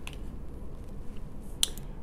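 Tarot cards being handled and set down on a wooden tabletop: a faint tap near the start and a sharp click about one and a half seconds in.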